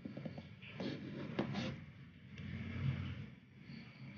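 Faint handling noise, a few light clicks and scrapes, as a multimeter probe is moved to a new test point on a TV circuit board.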